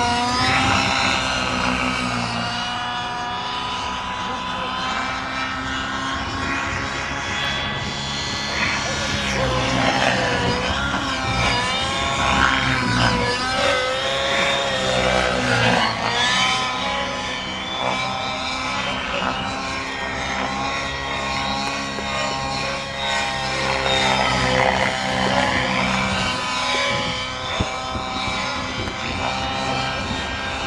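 Radio-controlled model helicopter flying: its engine and rotor run continuously, the pitch rising and falling again and again as it manoeuvres.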